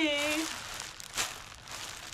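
Plastic bubble wrap crinkling as a wrapped package is handled, with one sharper crackle about a second in.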